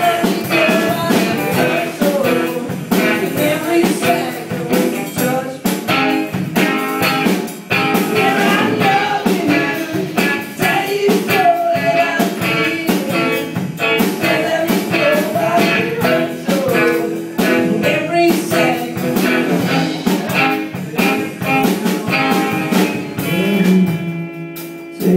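A male singer performing a song live, singing over his own strummed guitar.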